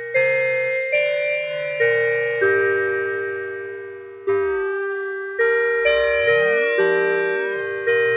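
UDO Super 6 polyphonic synthesizer playing a run of about ten notes or chords, each starting sharply and fading, with a metallic, bell-like sound from LFO-1 running at audio rate in high-frequency mode and modulating the filter. Twice the extra tones slide up and down in pitch as the LFO-1 rate is moved.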